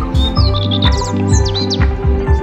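Background music with a steady beat and held tones, with a run of high, bird-like chirps over it through the middle.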